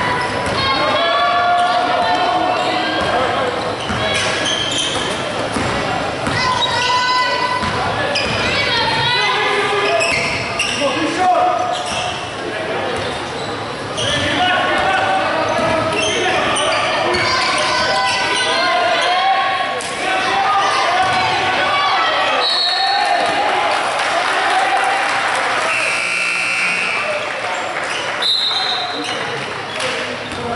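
Basketball dribbled on a hardwood gym floor during a game, with players' and spectators' voices calling out throughout and echoing in the large hall.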